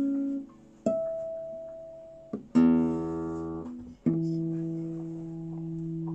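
Guitar played slowly, single plucked notes each left to ring out: a note fading at the start, then three more a second or two apart, the last a lower note held to the end.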